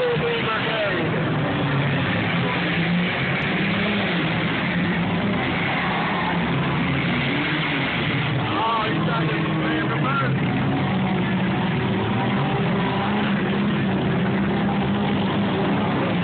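Demolition derby car engines running and revving unevenly across the arena, mixed with crowd voices.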